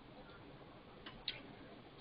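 Faint steady room hiss with a single short soft click a little past the middle, typical of a computer mouse being clicked.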